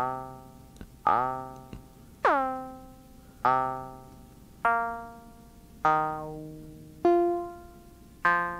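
Mutable Instruments Plaits synthesizer module in its granular formant oscillator model, playing a sequence of seven vowel-like "ah" notes, about one every 1.2 seconds. Each note starts with a downward vowel sweep and then fades, and the pitch changes from note to note.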